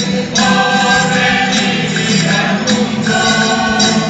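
Amateur mixed group singing a Spanish villancico (Christmas carol) together in chorus, in long held notes, accompanied by strummed acoustic guitars and jingling percussion.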